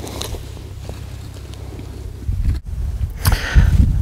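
Wind rumbling on an outdoor microphone, steady at first and louder near the end.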